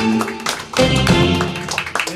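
Live band with saxophone, guitar, keyboard, bass and drums playing the closing bars of a Shōwa-era pop ballad, ending on a held final chord that stops shortly before the end. Scattered hand claps begin as the chord dies away.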